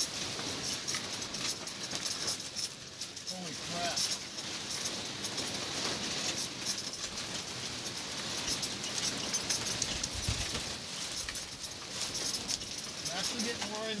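Strong wind buffeting a pop-up camper: a steady rush of wind with constant rattling and clicking from the camper, and a low thud about ten seconds in.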